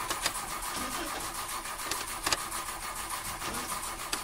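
A van's engine cranking on the starter motor in a steady, rapid churn without catching. The van won't start, which a passenger puts down to it not having been fuelled.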